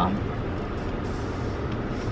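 Steady low rumble and hiss inside a stationary car's cabin, with no distinct events.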